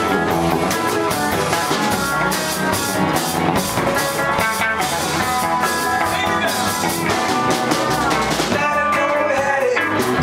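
Live band music: a steel-string acoustic guitar strummed and picked together with a drum kit.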